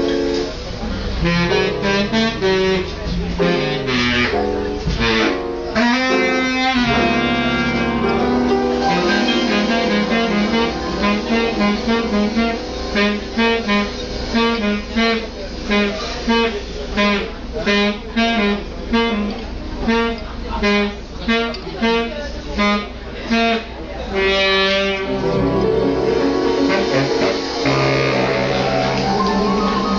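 Live big band playing a swing instrumental. Through the middle stretch it plays a run of short, evenly spaced repeated notes, then returns to fuller sustained chords near the end.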